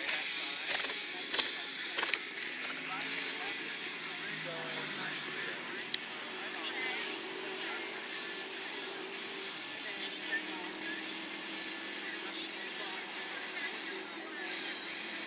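Indistinct distant voices over a steady outdoor hiss, with a few sharp knocks in the first two seconds and another about six seconds in.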